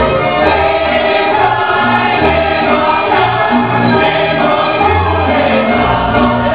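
Serbian folk dance music with a group of voices singing together over a steady low beat about once a second.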